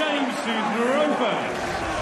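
A man speaking, over a steady background hiss.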